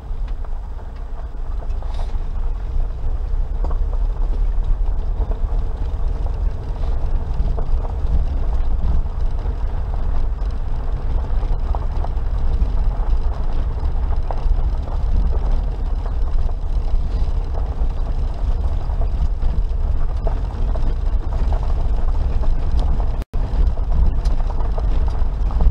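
Suzuki Jimny Sierra JB43 driving along a gravel forest track, heard from inside the cab: a steady low engine and road rumble with small scattered ticks and rattles from the gravel under the tyres. The sound cuts out for an instant near the end.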